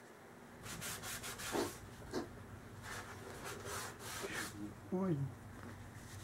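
Cloth shop towel rubbing and wiping grease off a small metal air-rifle part, in a run of short irregular strokes. A brief hum of a voice comes near the end.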